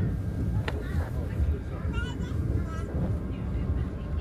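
Steady low rumble of an MBTA Red Line subway car rolling along a station platform as the train pulls into the station, heard from inside the car. A single sharp click comes less than a second in.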